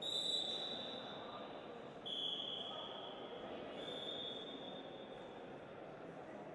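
Referee's whistle blown three times, each blast about a second long, the second a little lower in pitch, over a steady murmur of hall noise.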